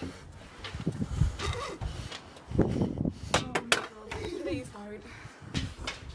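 Handheld camera being jostled while carried: irregular rumbling thumps of handling noise, a few sharp clicks about three and a half seconds in, and brief bits of voices.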